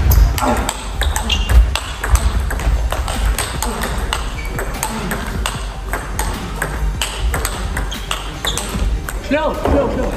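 Table tennis rally: the ball clicking sharply off the players' rubber-faced bats and bouncing on the table in quick, irregular succession, the exchanges ringing in a large hall.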